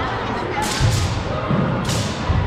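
Thuds of feet stamping on a wooden gym floor and a few sharp cracks during a wushu weapons routine, over background voices. The cracks come about two-thirds of a second in, at about one second, and near the end. The thuds fall near one second and again around a second and a half.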